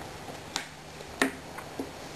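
Three light clicks and knocks as plastic toiletry bottles are handled and set in a wicker basket. The middle knock, about a second in, is the loudest.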